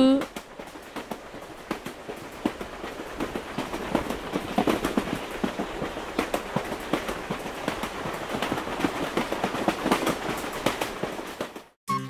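Cartoon toy-train running sound effect: a dense, irregular clatter of clicks and clacks of wheels on the track. It grows louder a few seconds in and cuts off shortly before the end.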